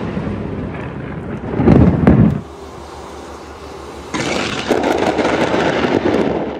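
Thunderstorm recorded on a phone. A loud crack and rumble of thunder comes about two seconds in and cuts off abruptly. A second loud rushing burst of storm noise starts suddenly about four seconds in.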